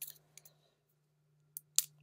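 Small sharp clicks and taps of plastic bottles and packaging being handled: a little cluster at the start, then three crisp clicks near the end.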